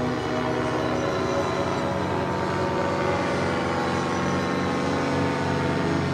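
A paramotor's engine and propeller drone steadily as it flies overhead, holding an even pitch.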